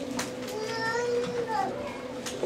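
A faint child's voice in the background over a steady low hum.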